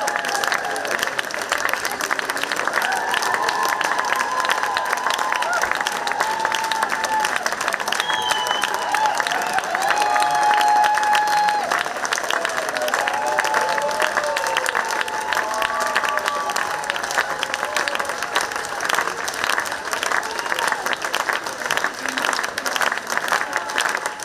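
Audience applauding steadily, a dense clapping of many hands, with voices calling out over it.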